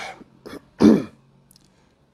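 A man clears his throat once, a short, loud rasp about a second in.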